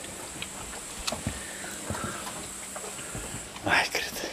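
Brown bear eating watermelon and apples: scattered wet chewing and clicking sounds, with a louder short noise near the end.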